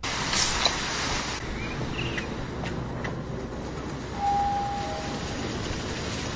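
Steady hiss of pop-up lawn spray sprinklers watering grass, with a few faint ticks and a brief high tone about four seconds in.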